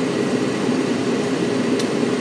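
Steady hum of a room air conditioner running, with one faint click near the end.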